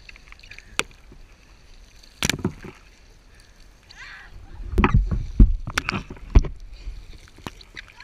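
Stand-up paddle splashing and slapping the water, with water sloshing around paddleboards: a run of sudden splashes and knocks over a low rumble, the loudest cluster in the second half.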